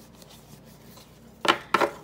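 Paper sticker sheets handled, with two short crisp paper sounds about a second and a half in as the sheets are put together and moved.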